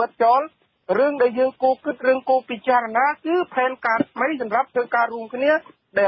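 Speech only: a voice reading the news in Khmer, with a narrow, telephone-like sound. There is a short pause just under a second in.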